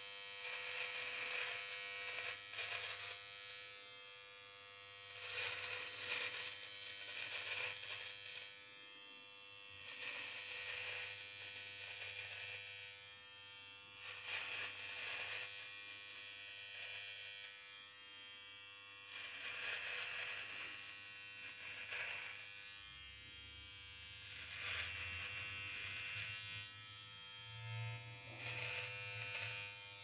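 Gillette Intimate Trimmer, a battery-powered electric hair trimmer, buzzing steadily with its comb set to 9. The sound swells every few seconds for a second or two as it is run through the goatee hair, cutting it.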